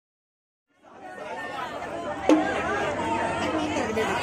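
Silence for the first second, then the chatter of a crowd of onlookers fades in and runs on, with one sharp knock a little past two seconds in.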